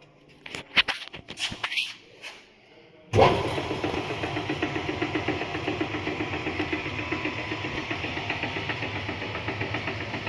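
A few clicks and knocks, then about three seconds in a GB spiral dough mixer's electric motor starts suddenly and runs steadily with the bowl empty, a mechanical hum with a fast, even pulse.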